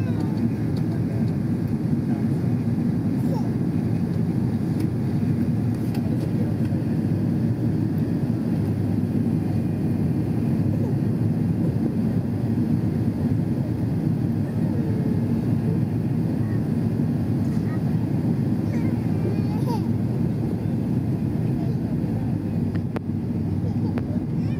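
Steady, loud cabin noise inside an airliner on its descent to landing: engines and air rushing past the fuselage, heard from a window seat, with faint voices of passengers underneath.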